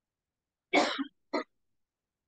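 A person clearing their throat: two short bursts, the first longer and louder, the second about half a second later.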